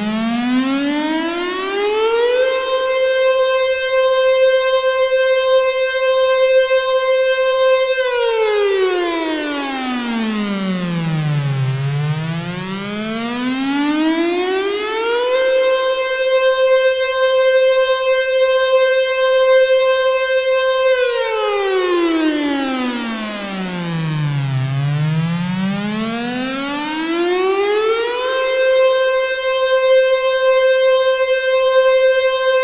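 Civil-defence-style warning siren wailing: its pitch rises over a couple of seconds, holds a steady high note for about five seconds, then slowly falls low again. The cycle repeats about every 13 seconds and is on a rise and hold near the end.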